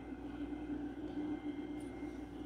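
Hot-air heat gun running steadily, its fan blowing with a low, even hum.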